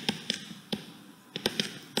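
Pen stylus tapping and clicking against a tablet screen while handwriting, about six light, irregular taps.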